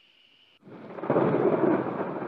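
A sound effect under an end logo: a dense rushing noise, like a rumble of thunder, that swells up about half a second in and then holds loud.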